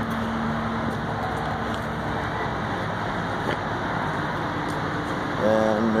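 A steady drone of running machinery, with a faint humming tone that drops out about two seconds in.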